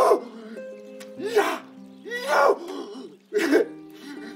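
A man grunting and shouting in four short bursts over a sustained background music score.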